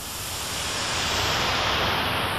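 A hissing whoosh sound effect for an animated logo, swelling steadily louder, with its highest part sliding slowly downward.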